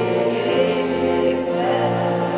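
A group of people singing together as a choir, holding long, steady notes that change pitch every half second or so.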